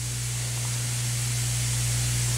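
Steady low hum with an even hiss over it, unchanging throughout; no other sound stands out.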